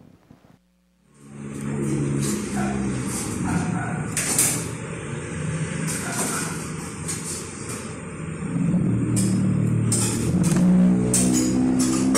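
Street traffic heard through a recording's own microphone: vehicle engines running, with a motorcycle going by, and a few short sharp cracks, the clearest about four seconds in.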